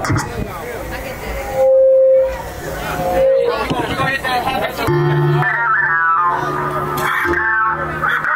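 Crowd voices and calls, with one loud held note about two seconds in. About five seconds in, music starts with a steady bass line and guitar.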